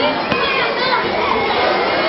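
A group of children talking and calling out over one another in a dense babble of young voices, with one short click about a third of a second in.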